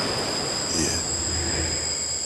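Opening sound effect of a recorded hip-hop track: a steady rushing noise with two high, steady whistling tones over it, before the track's spoken intro.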